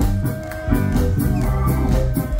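Live ska band playing, with electric guitar and drum kit over a steady beat; the level dips briefly about half a second in, then comes back full.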